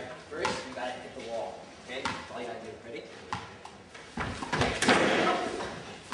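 Indistinct voices in a large, echoing hall, with a few sharp knocks and then a loud burst of noise about four seconds in.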